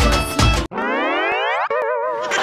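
Beat-driven music stops abruptly and a comic sound effect follows: a whistle-like tone rising in pitch for about a second, then a wobbling boing.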